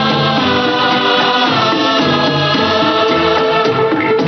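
Old Hindi film song playing: singing in long held notes over instrumental accompaniment.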